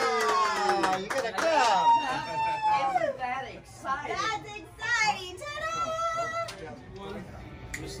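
Excited wordless vocal exclamations from onlookers: long, falling "ooh"-like calls and wavering cheers, with a few faint clicks.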